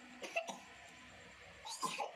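Two short bursts of a person's voice, about a second and a half apart, such as brief coughs or clipped utterances.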